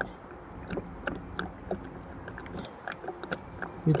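Engine oil pouring out of a jug through a plastic funnel into a Ford Duratorq DI diesel's oil filler, glugging with irregular soft clicks.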